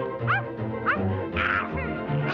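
Orchestral cartoon score with a steady plodding bass line, broken three or four times by short, quickly rising yelps.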